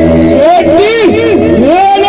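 A man's voice singing through a loud stage public-address system, its pitch sliding in long curves over held instrumental notes.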